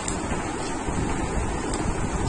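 Steady rushing noise, like wind on the microphone, with no distinct events.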